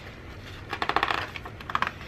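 A paper planner page being turned on a metal wire-o binding, giving a rattle of rapid small clicks as the sheet moves on the coil rings, in two bursts about a second in and again near the end.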